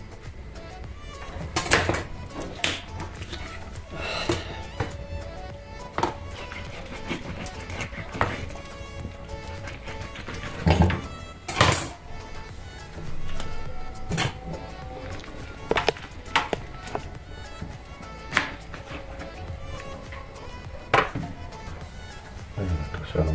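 Background music, with irregularly spaced sharp knocks of a knife cutting through a whole chicken's joints onto a plastic cutting board, the loudest a pair about halfway through.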